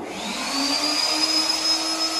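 An electric motor switches on suddenly and runs with a steady rushing hiss. Its high whine rises over about the first second as it spins up, then holds steady.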